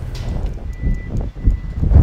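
An aerial work lift's warning alarm sounding a faint, steady high tone over a loud, uneven low rumble.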